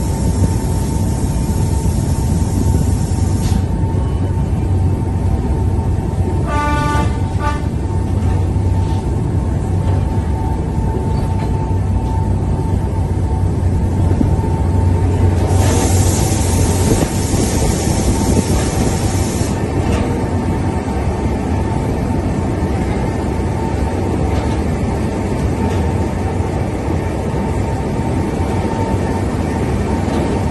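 Monte Generoso electric rack railway train running, heard from inside the carriage: a steady low rumble with a constant whine over it. About seven seconds in there is a brief pitched note lasting about a second, and in the middle a louder hiss rises for a few seconds.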